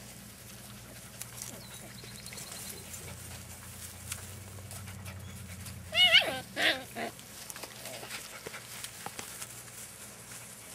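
Dachshund puppy giving two short, high, wavering yelps close together about six seconds in, over a steady low hum.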